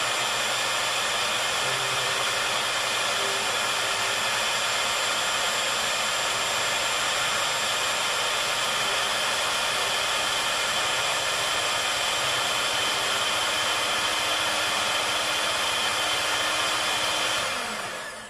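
Sunbeam electric hand mixer running steadily with a motor whine, its beaters whisking kefir and flaxseed oil in a glass measuring cup until creamy; the motor winds down and stops near the end.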